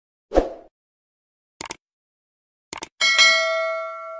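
Subscribe-button animation sound effects: a short thump, then two quick double clicks about a second apart. A bell-like notification ding follows about three seconds in; it is the loudest sound and rings on as it fades.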